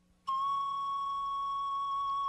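A single steady high-pitched tone, like a held flute or whistle note, starts about a quarter second in and holds without changing pitch.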